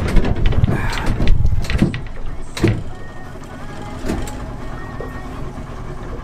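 Motorboat under way: engine and water noise, heavy and low for the first three seconds with a few sharp knocks, then settling to a quieter, steady hum.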